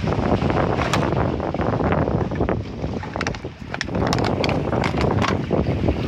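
Wind buffeting the microphone in a loud, uneven rumble, with a few short clicks and knocks scattered through it.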